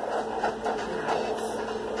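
A steady, even background hum with a faint constant drone underneath; no distinct events.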